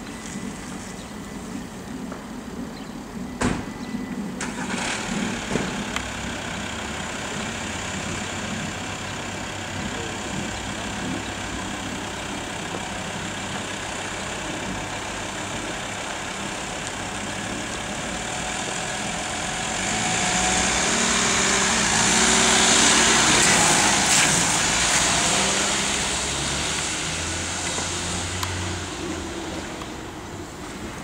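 Volkswagen Transporter ambulance's engine running at idle, with two sharp door slams a few seconds in. About two-thirds of the way through the engine gets louder as the van pulls out and drives off, then fades. No siren sounds.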